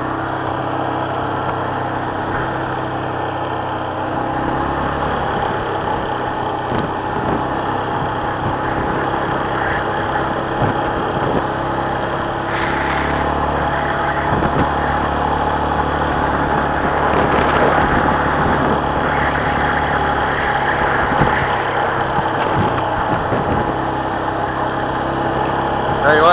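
A 2018 Yamaha Kodiak 450 ATV's single-cylinder engine runs at a steady speed while the quad is ridden along a sandy wash, with scattered knocks and rattles from the rough ground.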